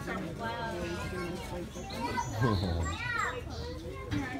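Children's excited voices and chatter from people at the glass, with a high voice sweeping up and down about two to three seconds in. The lions make no sound that stands out.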